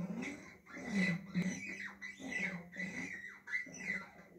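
A voice making a string of short speech-like sounds with rising and falling pitch, in which no clear words are made out.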